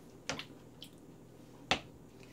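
A few short, sharp clicks from the cook's hand and fingers over a slow cooker as seasoning is sprinkled onto raw oxtails, the loudest near the end.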